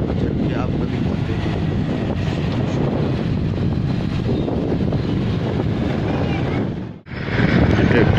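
Motorcycle engine running with wind buffeting the microphone as it rides along, a steady low noise. It cuts out briefly about seven seconds in, then carries on.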